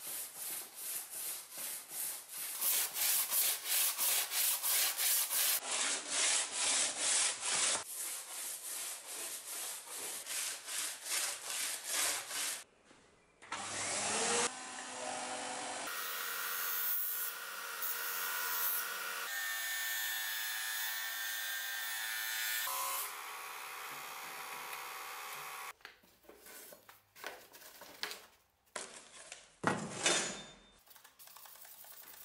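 A steel mortise chisel rubbed back and forth on sandpaper in regular scraping strokes, about two a second. Then comes a steady run of a belt/disc sander with its dust vacuum, grinding the chisel against the sanding disc. Near the end there are a few strokes of hand sanding again.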